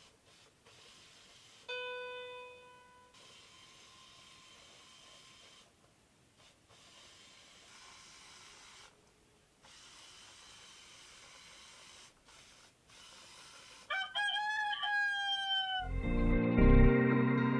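Toy walking robot (Kumiita) sounding a single electronic musical note about two seconds in, held for about a second and a half. Near the end its speaker plays a rooster crow in two parts, falling in pitch, set off by the chicken tile on its path.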